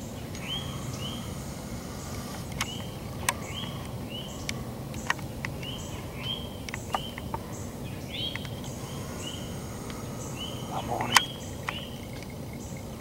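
Woodland ambience with a small animal's chirping call repeated about twice a second, short high steady notes in stretches, and scattered sharp clicks or snaps, the loudest near the end.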